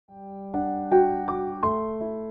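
Slow, soft piano-style keyboard music: a low note rings, then single notes are struck about three times a second, each left to ring and fade.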